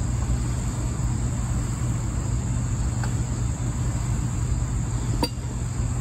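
Steady high-pitched insect chorus over a continuous low rumble, with one sharp click about five seconds in.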